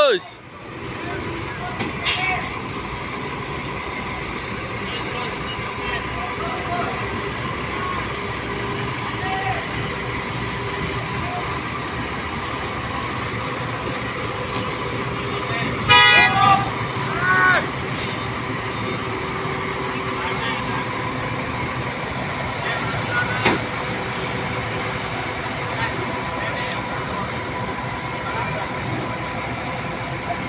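Heavy diesel forklift engines running steadily while lifting and carrying a large power transformer. About halfway through comes a short burst of shrill signal toots, with calls around it.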